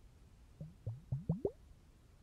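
Bubbles plopping in water, from an ASMR water globe: about five quick plops, each rising sharply in pitch, bunched together just before the middle.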